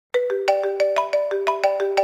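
Mobile phone ringtone: a quick melody of short ringing notes, about six a second, starting just after the beginning.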